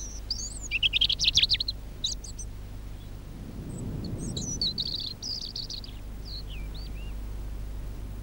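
Small birds chirping and calling, with a quick run of rapid high chirps about a second in, then scattered whistled calls and short trills over a steady low hum.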